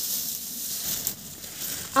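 Rustling of grass and dry leaf litter as a hand pushes through the vegetation.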